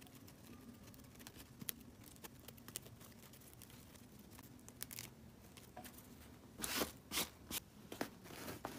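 Faint rustling and small crackles of stiff aso-oke fabric being handled as fingers pick loose cut-out pieces from its soldering-iron-cut edge, with three louder rustles near the end as the fabric is moved and spread out.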